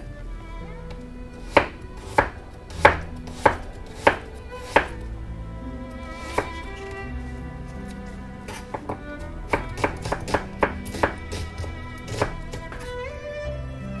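Kitchen knife slicing an onion on a plastic cutting board: sharp knocks of the blade meeting the board, a handful about half a second apart in the first five seconds, then a quicker run of cuts from about eight and a half to twelve seconds in.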